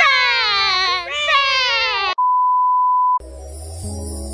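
A woman's long, high excited yell of celebration, held and wavering as it falls in pitch, for about two seconds. It cuts to a steady edited-in bleep tone about a second long, after which soft music with low bass notes begins.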